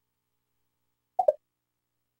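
TiVo interface sound effect: a short two-note bloop falling in pitch, about a second in, as the menu steps back from the Now Playing List to TiVo Central.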